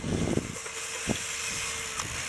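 Radio-controlled on-road cars running on asphalt: a steady high hiss with a faint steady tone under it, and one sharp click about a second in.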